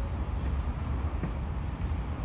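Steady low rumble of background noise in a large hall, with no speech.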